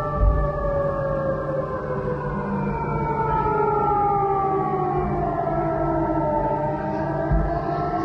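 Civil-defence air-raid siren wailing, its pitch sliding slowly down and then starting to climb again near the end. Two short low thumps, one just after the start and one near the end.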